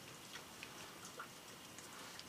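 Faint, quiet paper sounds: a few soft ticks and light rubbing as fingertips press a glued paper die-cut down onto a cardstock panel.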